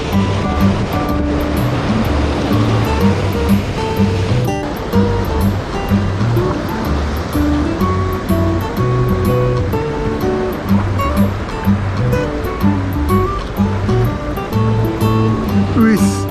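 Background music with a steady bass line, over the rushing noise of surf breaking on a rocky shore.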